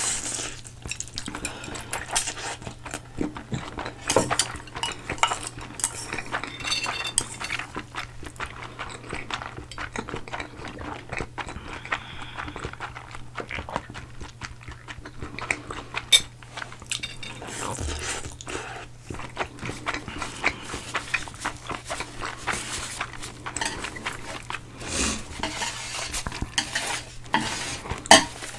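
Close-miked eating sounds: spicy instant noodles slurped and chewed, with chopsticks clicking against ceramic bowls and a metal baking tray in frequent short knocks.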